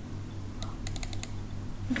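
A quick run of about six computer keyboard key taps within under a second, partway through.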